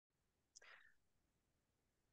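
Near silence, with one faint, brief soft noise about half a second in.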